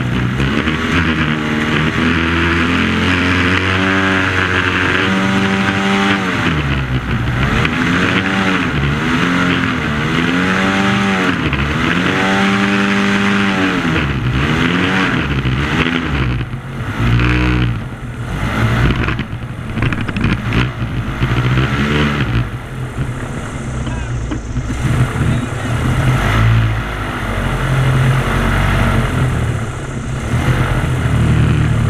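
Airboat engine and propeller running loud, revving up and down in several quick swells through the first half, then running steadier at a lower pitch.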